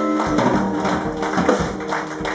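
Live band playing a funk instrumental: two electric guitars over a drum kit. Guitar notes are held, with drum hits cutting in.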